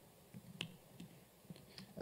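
A handful of faint, scattered key clicks from a laptop keyboard as a terminal command is typed.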